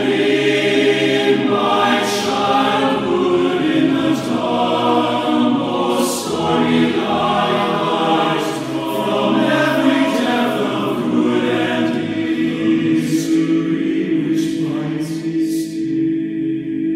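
Men's a cappella choir singing in four-part TTBB harmony, with held chords and several crisp hissing consonants along the way, in a reverberant church.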